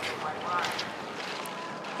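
Cross-country skis skating over snow with a steady swishing hiss and wind on the microphone, and a faint voice about half a second in.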